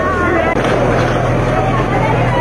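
Voices of a crowd, with a raised voice near the start, over a steady low hum that strengthens about half a second in.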